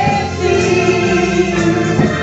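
Gospel song: a woman singing into a microphone over organ accompaniment, holding one long note through the middle.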